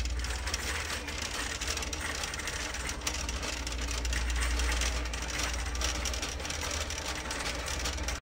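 Plastic shopping cart rolling along a concrete store floor: a steady low rumble from the wheels with a fine, continuous rattle.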